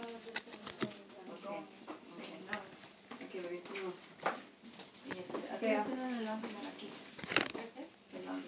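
Baseball cards being flipped through by hand, giving light clicks and rustles, with the sharpest snap near the end, under faint murmured speech.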